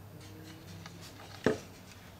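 Hands handling a plastic batten light holder and its wiring, with one sharp plastic knock about one and a half seconds in.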